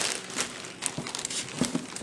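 Clear plastic bag of craft moss crinkling as it is handled and set down in a storage tote: an irregular run of rustles and small crackles.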